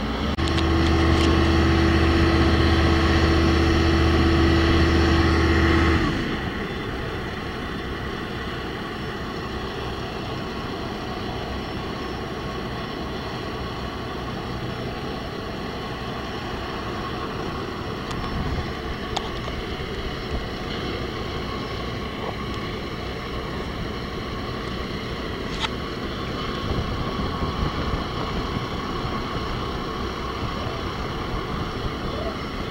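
Heavy construction machinery diesel engines running steadily: a loud, even engine drone for about the first six seconds that cuts off suddenly, then a lower, rougher rumble of crane and forklift engines with wind on the microphone and a few faint clicks.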